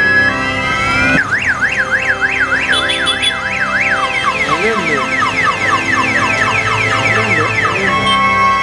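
Electronic vehicle siren on a hearse, cycling through patterns: a rising tone, then a fast up-and-down yelp from about a second in, switching around four seconds in to quicker repeated falling chirps. Organ music plays underneath.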